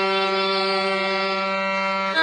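A woman singing a Bengali song, holding one long steady note over a sustained low accompaniment drone.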